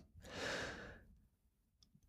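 One audible breath from a person at the microphone, lasting under a second, in a pause of the conversation.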